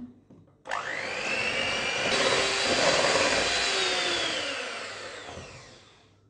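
Electric hand mixer running with its beaters in a stainless steel bowl, beating cocoa into a margarine and sugar batter. The motor whirs up to speed about a second in, holds, then winds down with falling pitch near the end.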